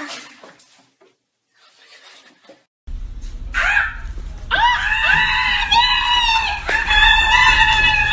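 A person screaming in a long, shrill, high-pitched cry, held with only short breaks from about four and a half seconds in, over a low rumble of room noise. A short rising yelp comes just before it.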